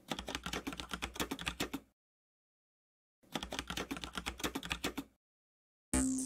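Computer-keyboard typing sound effect: rapid key clicks in two runs of about two seconds each, with dead silence between them. An electronic music sting starts abruptly at the very end.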